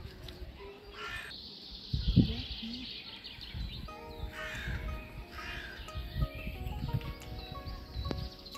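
A crow-like bird cawing a few times, about a second in and again around the middle, with a single heavy thump about two seconds in.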